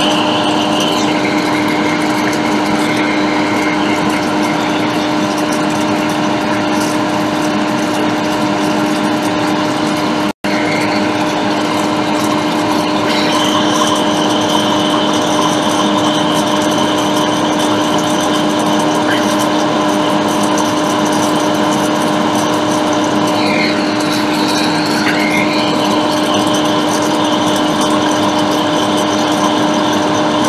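A small electric blower motor on a microsoldering bench, running steadily with a constant hum under an even whir, with one very brief dropout about a third of the way in.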